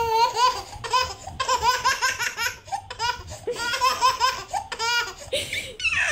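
A baby laughing hard in runs of quick, high-pitched bursts, with a drawn-out falling squeal at the end.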